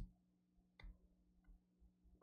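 Near silence with a faint steady hum and a few faint clicks: a sharp one at the very start, another a little under a second in, and a softer one about a second and a half in.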